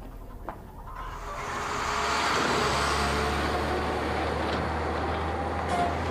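An old truck driving along a gravel road, its engine running with a steady low hum and tyre noise. It grows louder over the first two seconds, then holds steady.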